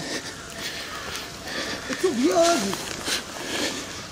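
Quiet outdoor background hiss with a few faint clicks, and one short voiced sound, rising then held, about two seconds in.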